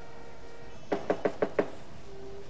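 Knocking on a door: five quick raps about a second in.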